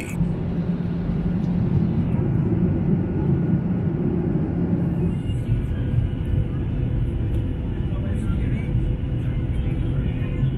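Steady airliner cabin noise heard from a window seat on approach to landing: engine and airflow rumble with a low steady hum, which weakens about halfway through.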